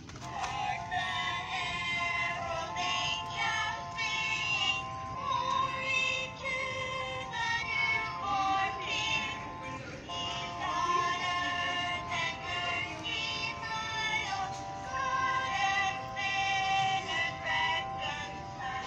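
A singing Christmas card playing a song from its small built-in speaker, a melody of held notes that starts as the card is opened.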